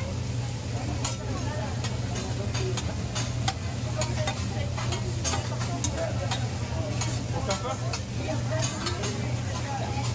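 Hibachi chef's metal spatula and knife clacking and scraping on a steel teppanyaki griddle, in irregular sharp taps as he chops and pushes onions, over food sizzling and a steady low hum.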